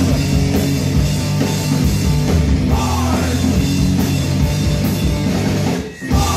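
Rock band playing loud live music with guitar and drum kit over a heavy low end, breaking off briefly just before the end.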